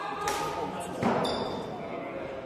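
Sparring longswords meeting in a bout: a sharp knock about a second in, the loudest sound, with a short ringing after it, echoing in a large hall. A voice calls out just before it.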